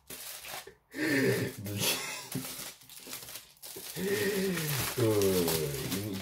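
Aluminium foil crinkling as a foil-wrapped package is unfolded by hand, with a voice sounding over the last two seconds.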